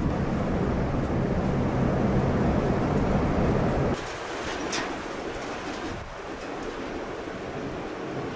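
A steady low rumble that cuts off abruptly about halfway through, leaving quieter outdoor ambience with a few short bird calls.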